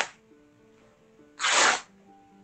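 Cotton fabric swishing close to the microphone as it is shaken and handled: a short rustling whoosh at the very start and another about one and a half seconds in. Soft background music with held notes underneath.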